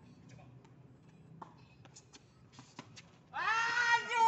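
A few faint sharp knocks of tennis balls being hit, then about three seconds in a loud, high-pitched, drawn-out human cry that starts suddenly and wavers in pitch.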